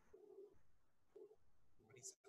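Near silence: faint, muffled speech from a news report playing back very quietly, heard only as a low murmur.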